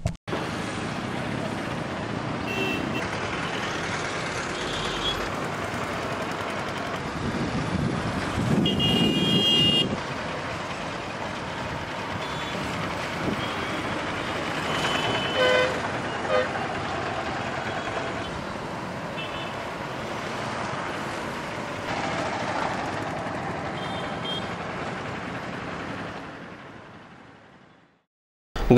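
Town road traffic: motorcycles and auto-rickshaws running past, with several short horn toots, the longest about nine seconds in as a louder vehicle goes by. The sound fades out over the last couple of seconds.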